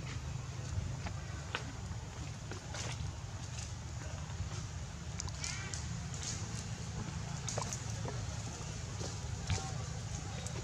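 Outdoor ambience: a steady low rumble with scattered faint clicks and ticks, and a brief chirp about five and a half seconds in.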